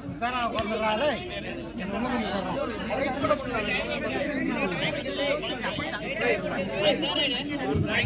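Many overlapping voices of spectators and players talking and calling out together, a steady chatter with no single voice standing out.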